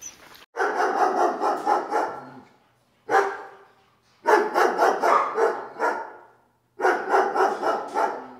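A dog barking in quick runs of barks: four bursts separated by short silences, the first starting abruptly about half a second in.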